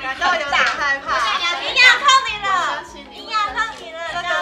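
Several women talking in high, lively voices over quiet background music.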